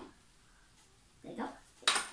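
Near quiet, then a sharp clack near the end: a hard plastic object knocking against a plastic tub of slime glue.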